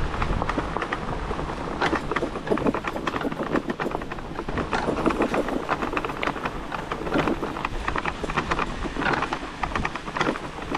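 Fat-tyre e-bike rolling over a rough, rocky dirt trail: a continuous irregular rattle and clatter of the bike jolting over bumps, over steady tyre and trail noise.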